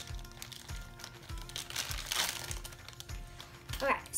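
Clear plastic wrapping crinkling in two bursts as a small plastic toy pitcher is pulled out of its bag, over background music with a steady beat.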